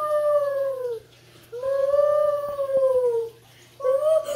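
Two long howls, each about two seconds, with a slight rise and fall in pitch.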